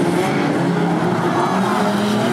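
Several unlimited banger race cars' engines running hard together, their overlapping engine notes rising and falling as the cars race and push into each other.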